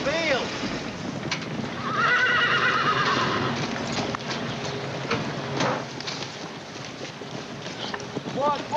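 A horse whinnying: a short call right at the start, then a longer quavering run of calls about two seconds in, with a few hoof knocks on the ground.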